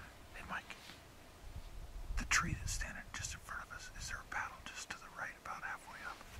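Whispered speech: a man whispering in short phrases.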